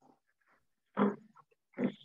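Two brief grunt-like voice sounds, one about a second in and one near the end, with near silence between them.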